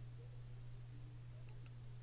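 Computer mouse button clicked about a second and a half in, two sharp clicks close together, over a steady low hum.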